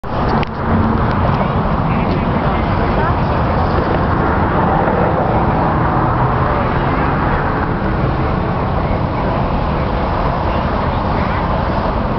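Steady traffic noise from a busy multi-lane highway, cars and trucks streaming past below.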